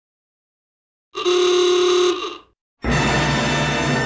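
Cartoon soundtrack stings: a held musical tone of about a second, then about three seconds in a sudden loud, bright chord that rings on and slowly fades, a dramatic sting for the discovery of the scratch on the phone.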